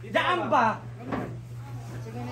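People talking in a small room, with a brief knock about halfway through, like a cupboard door, over a steady low hum.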